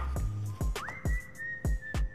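Background music: a whistled melody over a light beat of short percussive hits and low bass notes. The whistle glides up just before a second in and holds one long high note.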